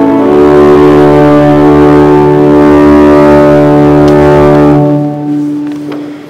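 Church organ holding a sustained chord after a chord change just after the start. The chord is released about five seconds in, and the sound dies away in the room.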